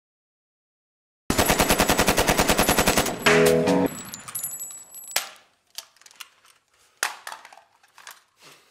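A burst of automatic gunfire, about a dozen rapid shots a second for roughly two seconds, starting suddenly after a second of silence. It is followed by a short ringing metallic sound and then a few scattered metallic clinks.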